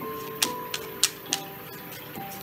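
A deck of tarot cards being shuffled by hand, giving about four sharp card clicks over two seconds, under soft background music of long held notes.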